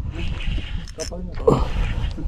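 A man breathing hard in long, regular breaths, with a grunt about one and a half seconds in, as he strains against a hooked fish on a light spinning rod. A steady low rumble runs underneath.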